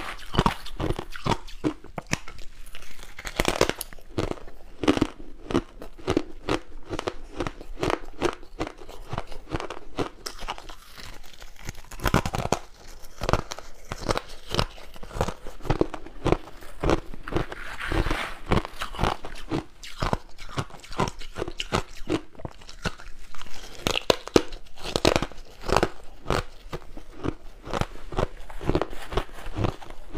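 Ice being crunched and chewed close to a lapel microphone: a continuous run of irregular, crisp crunches.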